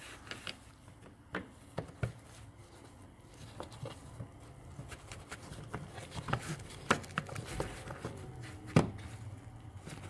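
Scattered light clicks and scrapes of a metal hook tool prying at a plastic push-pin clip in a car's plastic cowl panel, the clip not yet coming free.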